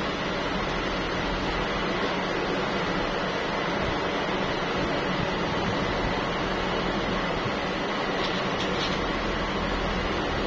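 Steady, unchanging machine noise, a constant rushing sound with a faint high whine running through it.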